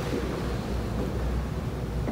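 Steady low rumble of room background noise with no distinct events.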